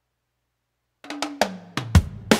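Silence for about a second, then a drum fill of about five quick hits, the last one the loudest, opening a piece of music.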